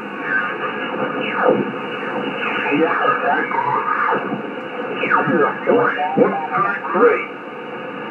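Icom IC-756PRO II receiver audio as the main tuning dial is turned up the 20-metre band: single-sideband voices swoop up and down in pitch and garble as each station is tuned past, over steady band noise.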